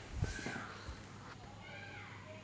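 Faint knocks and scrapes of a wooden spoon stirring meat and spices in a clay pot, mostly in the first second. A faint high wavering sound is heard twice in the background.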